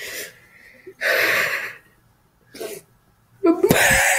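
Short breathy, gasp-like bursts of voice with quiet gaps between them, then near the end a loud yell that holds one long note, slowly falling in pitch.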